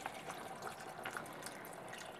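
A thin stream of water poured into a stainless steel pot of browned beef, splashing faintly and evenly into the liquid around the meat.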